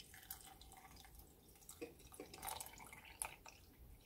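Water poured in a thin stream from a plastic citrus juicer's spout into a glass, heard as a faint trickle with scattered drips.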